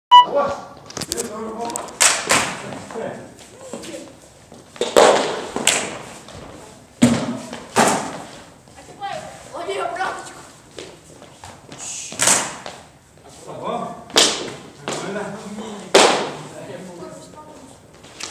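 Hard training sticks striking in stick-fighting sparring: about ten loud, sharp strikes at irregular intervals, several coming in quick pairs, as blows are exchanged.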